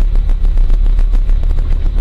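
A loud, continuous low rumble with irregular crackling.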